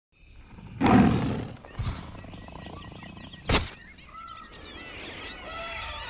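Jungle wildlife sounds: a loud low animal call about a second in, a sharp crack at about three and a half seconds, then many short chirping, whistling bird calls.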